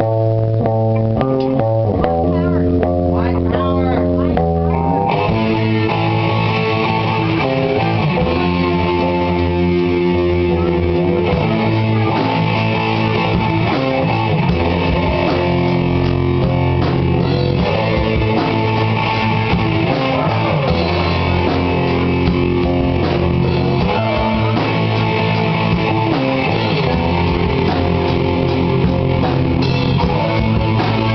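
Live rock band jam: electric guitar and bass guitar playing sustained chords, with the drum kit and cymbals coming in about five seconds in.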